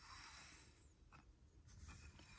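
Near silence, with faint rubbing and a few light clicks of sleeved trading cards being set into clear plastic display stands.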